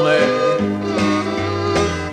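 Country band music from a 1960s record: a short instrumental stretch between sung lines, with the singer's last word held briefly at the start.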